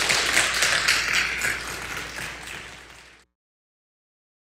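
Audience applauding, loudest at first and gradually thinning, then cut off suddenly a little over three seconds in.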